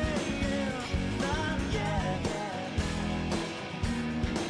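Rock band music with a steady drum beat and guitar, a melody line bending up and down over it.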